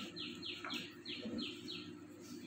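A small bird chirping: a quick run of about seven short, high chirps, each falling in pitch, roughly four a second.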